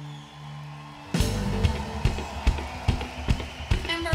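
Live band music: a held low note from the end of one song fades for about a second, then the full band comes in with drum kit, bass and guitar, starting the next song on a steady beat.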